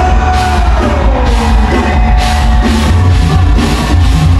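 A live band plays an Isan toei dance song, loud, with a heavy bass and drum beat. A singer holds a long note that slides down in pitch during the first second and a half.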